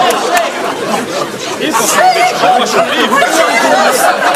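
A crowd of people talking and calling out over one another, several voices at once.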